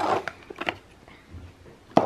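Cardboard box and plastic toy packaging handled by hand: a short rustle, a few light clicks and taps, and a sharper click with a rustle near the end.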